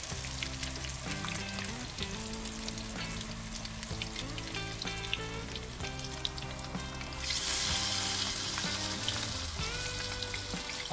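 Battered pumpkin flowers deep-frying in hot oil in a wok: a steady crackling sizzle. About seven seconds in, the sizzle turns louder and hissier as a fresh battered flower goes into the oil.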